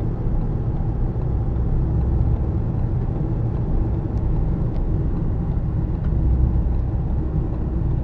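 Steady low road and engine drone inside a moving car's cabin.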